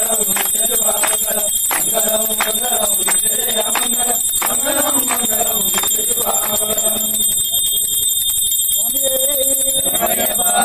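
A group of men chanting together in unison while a brass hand bell is rung steadily, about two strokes a second, during a camphor-lamp aarti.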